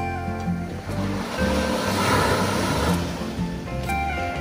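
Small sea waves breaking and washing up a sandy beach, the wash swelling about a second in and fading near the end, under background music with a steady bass line.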